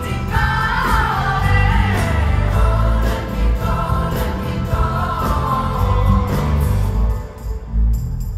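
Live pop-rock concert music from the audience: a band with heavy bass and drums under a male singer holding long, sliding vocal notes. The music thins out near the end.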